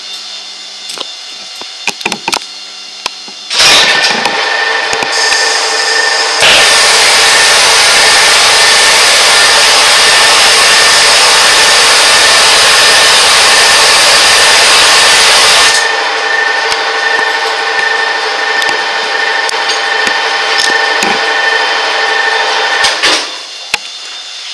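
A CastoDyn powder flame-spray torch spraying metal onto a motorcycle crankshaft half turning in a metal lathe. The torch comes on suddenly about three and a half seconds in with a steady loud hiss. From about six to sixteen seconds, while powder is being sprayed in a shower of sparks, the hiss grows much louder and harsher. It then settles back and cuts off about a second before the end.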